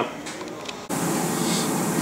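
Quiet room sound with a few faint clicks. About a second in, it switches abruptly to a steady, even rush of ventilation air in a paint spray booth.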